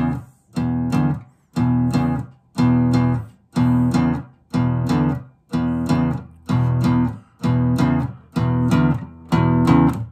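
Acoustic-electric guitar strumming chords in a steady rhythm, about two strokes a second, each chord stopped short before the next.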